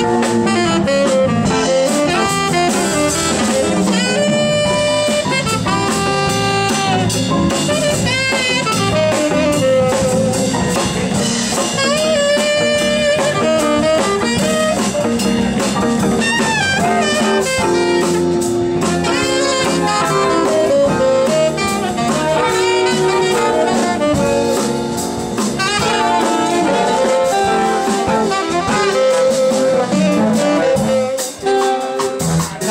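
A live jazz big band playing, with a tenor saxophone taking a solo of quick, bending melodic runs over sustained horn chords and electric bass.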